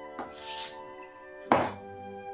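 A spatula scraping and smoothing cake batter in a loaf pan, with a sharp knock about one and a half seconds in, over steady background music.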